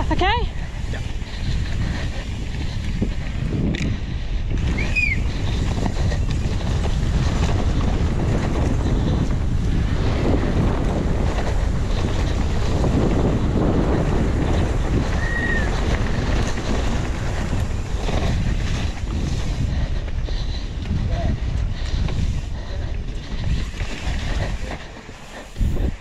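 Wind rushing over the rider-carried action camera's microphone as a downhill mountain bike runs at speed down a dirt track, mixed with tyre and bike noise over the rough ground. Two short high squeaks stand out, about five seconds in and about fifteen seconds in, and the noise drops briefly near the end.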